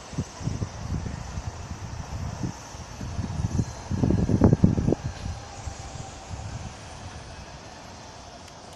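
C62 2 steam locomotive running slowly toward the microphone at a distance, mixed with uneven low rumbling gusts that are heaviest about four to five seconds in and die away near the end.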